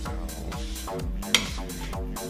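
Background electronic music with a steady repeating beat, and one sharp click a little past halfway.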